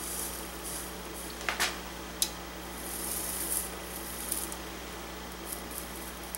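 Quiet soldering at a joint on a steel rifle barrel: faint patches of hiss from the hot, smoking flux and solder, with a few light metal clicks as the rod touches the work in the first two and a half seconds. A steady low electrical hum runs underneath.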